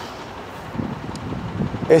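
Steady hum of road traffic on a city street, with a faint low rumble in the second half.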